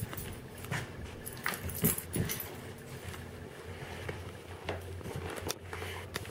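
A dog mouthing and chewing a small dry biscuit treat: a few short, scattered crunches and clicks with gaps between them.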